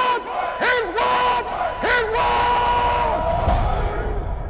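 A group of voices calling out in unison as part of a logo sting: four short swooping calls, then one long held call, followed by a brief swish and a low rumble near the end.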